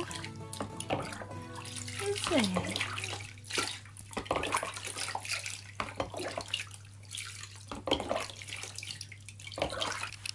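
Water poured from a glass tumbler over a guinea pig standing in a plastic basin, splashing and trickling back into the basin in a series of irregular pours.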